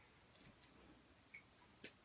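Near silence: room tone, with one faint click near the end.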